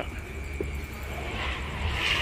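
Road traffic from the toll road: a steady low rumble, with the hiss of a passing vehicle swelling near the end.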